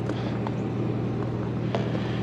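Ford 6.8-litre Triton V10 of a gas Class A motorhome idling, a steady low hum.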